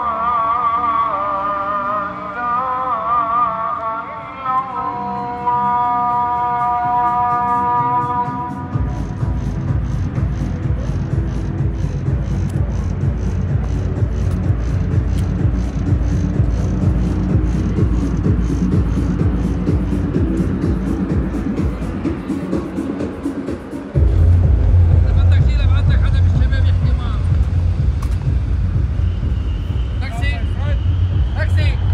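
A muezzin's call to prayer: one voice singing a melismatic line with a wavering, ornamented pitch. It stops about nine seconds in and gives way to a steady low rumble with faint rapid ticks, which suddenly grows louder about six seconds before the end.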